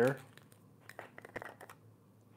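A scatter of faint clicks and light crinkling from a small jar of clay mask and its lid being handled.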